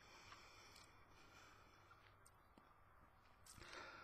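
Near silence: room tone, with a faint soft rush of noise near the end.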